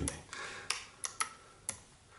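Miniature toggle switches being flipped by hand: four sharp clicks, unevenly spaced over about a second.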